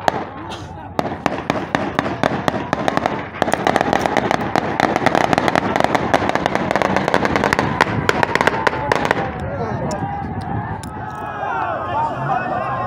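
Gunfire, scattered shots at first, then a dense run of many shots a second from about three seconds in to about nine seconds in. Men shout underneath, and their voices take over after the shooting stops.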